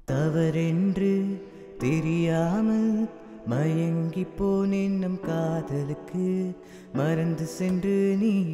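Playback of a mixed song: a sung vocal line in short phrases of a few held, stepping notes, with delay echoes and reverb on the voice and a chord backing.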